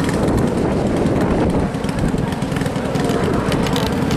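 Racing karts' small engines running as the karts circle a dirt oval track, a steady, loud mix with no single engine standing out.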